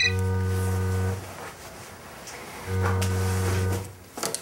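A mobile phone buzzing on vibrate with an incoming call: two steady low buzzes, each about a second long, about a second and a half apart.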